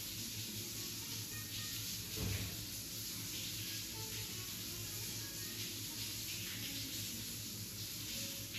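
Overhead rain shower head running, a steady hiss of water spray falling in a tiled shower stall.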